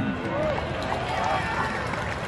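A large audience's many overlapping voices in a steady hubbub, calling out in response after a line of verse.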